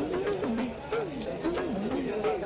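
Overlapping voices with gliding, rising-and-falling pitch, along with faint quick scraping clicks from a knife working the scales of a large katla fish.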